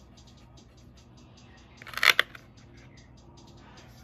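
A short scratchy rustle about two seconds in, from a watercolor brush being scrubbed in a pan of iridescent watercolor paint to loosen it. Faint background music with a steady ticking beat runs underneath.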